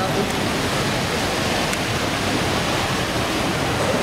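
A loud, steady rushing noise with no distinct events.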